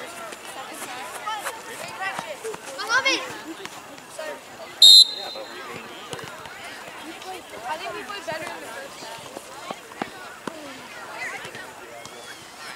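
A referee's whistle gives one short, shrill blast about five seconds in, starting play at a kickoff. Players' and spectators' voices carry across the field around it.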